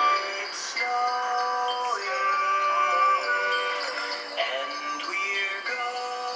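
A song with sung melody and backing music, played back through a television's small speaker and picked up in the room, so it sounds thin with no bass.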